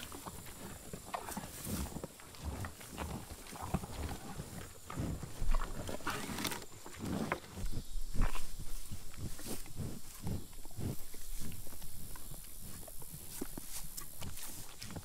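American bison chewing and crunching range cubes close to the microphone: irregular crunches and wet chewing, with snuffling breaths.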